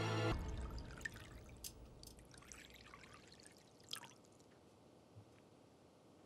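Faint pouring and dripping of liquid: Turkish coffee poured from an ibrik into a cup, with a few small clicks. Background music cuts off just at the start.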